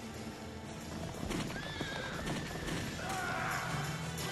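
Horse sound effects over background music: hooves galloping from about a second in, and a horse whinnying near the middle.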